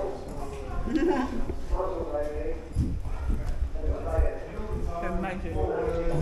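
Indistinct voices talking in a brick-vaulted room, with scattered short knocks and clatter from movement around the serving counter.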